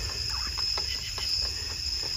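Steady chorus of crickets, with a few soft scrapes of bare hands digging into loose soil.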